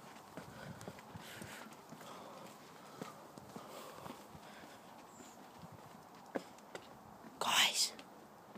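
Footsteps of people walking, with faint hushed voices. A short hissing burst near the end is the loudest sound.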